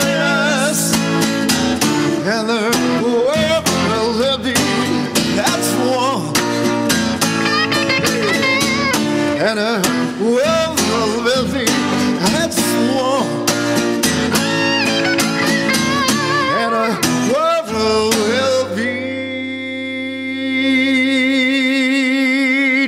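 Two men singing together live, accompanied by an electric guitar and an acoustic guitar. About three seconds before the end they hold a long note with vibrato over a sustained chord.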